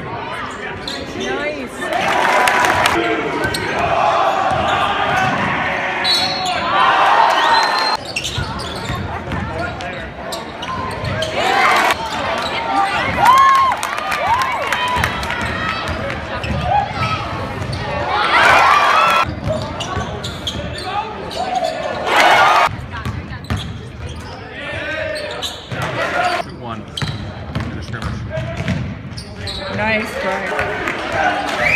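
Live college basketball game heard from the stands of a gym: spectators talking, a basketball dribbling on the hardwood court, and a few short louder bursts of crowd noise.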